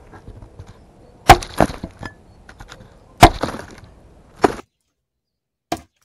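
Hatchet chopping dry pruned grapevine canes on a wooden chopping block: five sharp chops, the two loudest about a second and three seconds in.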